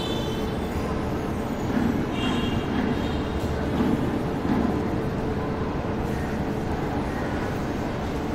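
Marker pen drawing on a whiteboard, with a few brief high squeaks near the start and about two seconds in, over a steady low rumble of background noise that swells a little between two and five seconds.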